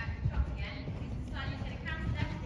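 Dull hoofbeats of a horse cantering on a soft sand arena surface, with a woman's voice talking in the background.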